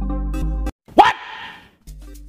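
An electronic amapiano beat with deep sub-bass and held synth chords cuts off suddenly. A moment later comes a single loud shouted vocal shot heard as "What?", with a short, hissy reverb tail.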